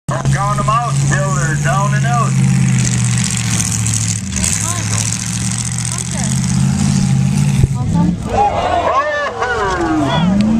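Demolition derby cars' engines running in a steady low drone, with voices calling out over them near the start and again in the last two seconds.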